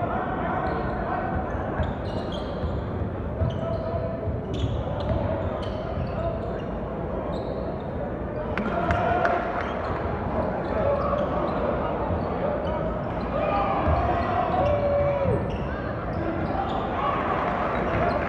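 Basketball game in a gym: a basketball dribbled on the hardwood court, sneakers squeaking, and the crowd's chatter and shouts echoing around the hall.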